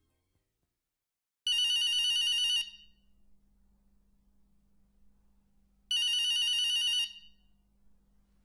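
Telephone bell ringing twice, each ring about a second long with a fast trill, the rings some four seconds apart, over a faint low hum.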